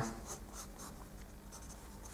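Faint scratchy strokes of a drawing tool sketching, several short strokes in quick succession.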